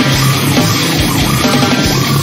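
Slamming brutal death metal playing loud and dense: heavily distorted electric guitars over drums, with frequent kick-drum strokes.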